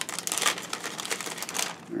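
Clear plastic kit bag crinkling and rustling in an irregular run of crackles as a plastic parts sprue is drawn out of it.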